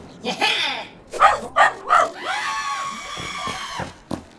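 Cartoon dog vocal effects: a few short yaps about a second in, then one long drawn-out cry near the end.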